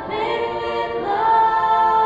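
A cappella female show choir singing held chords in several voices. About a second in, a higher voice slides up and holds a long note.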